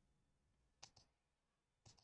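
Faint computer mouse-button clicks, two quick pairs: one just before a second in and another near the end.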